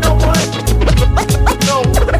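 Boom-bap hip hop beat with a DJ scratching a record on a turntable. Short sliding scratches swoop up and down in pitch over a heavy kick drum and bass.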